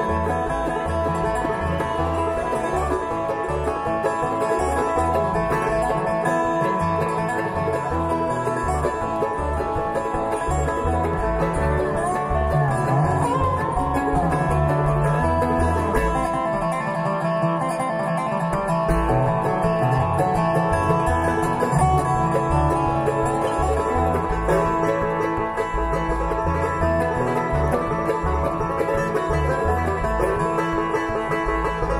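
Live bluegrass string band playing: banjo, mandolin, acoustic guitar, lap-played resonator guitar (dobro) and upright bass, with the bass keeping a steady pulse underneath.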